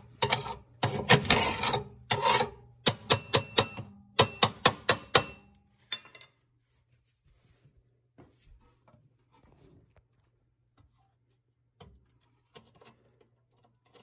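Metal scraper rasping ash and burnt pellet residue out of a pellet stove's burn pot in several long strokes, then a quick run of about ten short, sharp strokes at roughly four a second. About six seconds in the scraping stops and it goes nearly quiet.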